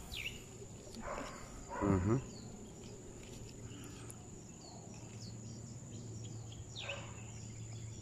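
Outdoor ambience with a steady, thin, high-pitched insect drone and scattered faint short chirps, broken by a person's short hummed "mmm" about two seconds in.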